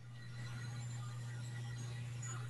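A steady low hum that switches on suddenly and holds an even pitch, with a faint hiss above it.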